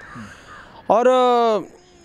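A man's voice holding out a single word, 'aur' (and), for under a second about a second in, after a pause with only faint outdoor background.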